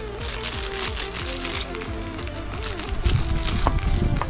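Clear plastic bag crackling and crinkling as it is handled, loudest in the first second and a half, over background music with a steady melody.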